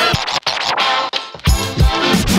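Background music with a drum beat and record scratching; the drums drop out for about a second in the middle, then come back.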